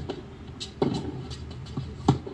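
Tennis ball struck by a racket once, a sharp pop just under a second in, with a few lighter ticks of ball and feet on the hard court around it, over a steady low hum.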